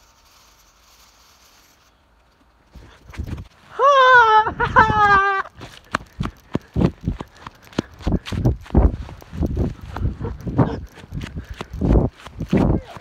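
A person's high, wavering scream in two bursts about four seconds in, then fast running footsteps on grass, thudding several times a second, with the phone jostling as it is carried at a run.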